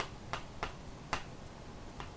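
Three sharp, separate clicks, the last about a second in, over a faint steady hiss.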